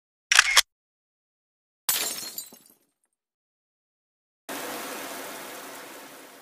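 Camera shutter sound effect, a short double click just after the start. About two seconds in comes a sharp crash that trails off over most of a second. From about four and a half seconds a rushing noise sets in and slowly fades.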